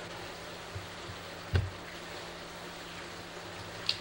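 Steady low hum and hiss of a room with appliances running, broken by a single sharp knock about a second and a half in.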